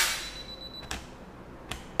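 Canon EOS 60D DSLR shutter firing once for a test photo: a sharp click with a short ringing tail, followed by two fainter clicks about a second and nearly two seconds in.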